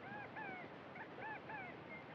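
Faint high-pitched animal calls: two pairs of short, arching chirps, one pair at the start and another about a second in.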